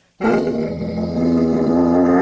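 A large mastiff-type dog giving one long, low growl of about two seconds, grumbling in protest at being ordered off the bed.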